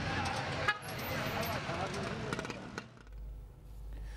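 A crowd of men talking over one another outdoors, with street and vehicle noise behind them. About three seconds in it gives way to a quiet, low room hum.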